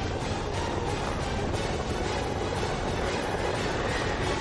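Title-sequence soundtrack: a steady, dense rumbling noise with music underneath.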